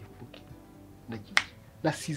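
Quiet background music with a few spoken syllables, and one sharp click about one and a half seconds in. Louder speech starts near the end.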